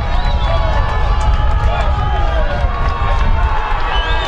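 Several voices calling and shouting over one another, players and spectators at a football match, over a steady low rumble.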